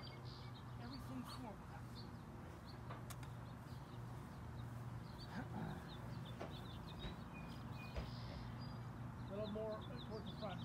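Small birds chirping on and off in the background, with faint voices at a distance now and then.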